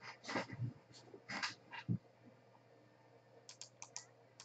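Faint computer mouse clicks near the end, as a right-click menu is opened in a spreadsheet. Before them, in the first two seconds, a few short soft noises of unclear source.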